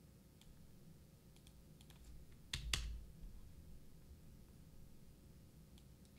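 A few faint clicks of computer keys, with two sharp, louder clicks and a low thump about two and a half seconds in.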